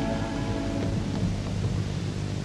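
Theatre audience applauding, a steady crackle of many hands, as the last string chord dies away in the first moment, over a low steady hum.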